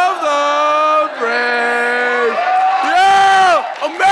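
Teenagers cheering: a run of long, drawn-out shouted calls of about a second each, celebrating a win at finger soccer.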